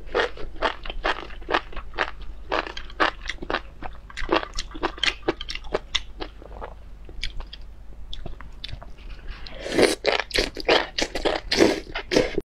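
Close-miked mouth sounds of chewing enoki mushrooms from a chili-oil broth: a quick run of short, wet crunches and smacks, growing heavier and louder near the end as a fresh mouthful goes in.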